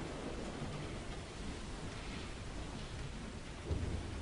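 Quiet concert-hall ambience with no music playing: a steady low rumble under a faint hiss, with a soft thump near the end.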